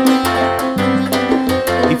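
Live salsa band playing an instrumental passage: an acoustic guitar picks a lead line over bass, piano and a steady percussion beat of about four strokes a second.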